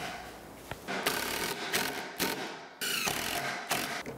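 Cordless Makita driver driving screws into three-quarter-inch plywood, in two short runs of about a second each with a mechanical, ratcheting sound.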